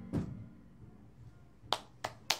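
The last chord of an electric stage piano fading out, a single sharp click just after it, then quiet until the first hand clap of a small audience's applause near the end, as the song finishes.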